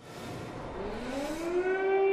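Civil-defence air-raid siren winding up: a rising wail that levels off into a steady tone about a second and a half in, over a rushing noise at the start.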